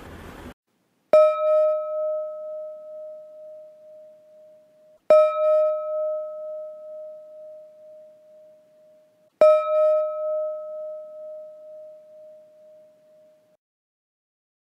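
A meditation gong struck three times, about four seconds apart. Each strike rings with one clear pitch and fades out slowly before the next.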